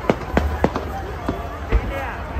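Aerial fireworks bursting overhead: about five sharp bangs in two seconds, the loudest early on and just before the end, over the chatter of a large crowd.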